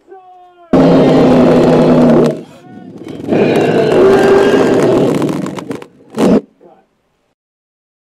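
Loud film sound effects: a blast with a deep steady hum lasting about a second and a half, then a longer roar, and a short sharp burst near the end.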